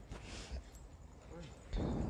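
Quiet background of people gathered outdoors: faint, indistinct voices, getting a little louder near the end, with a faint high pulsing trill running underneath.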